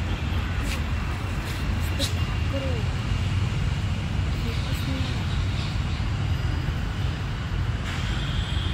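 Steady low rumble of road traffic, with faint snatches of distant voices now and then.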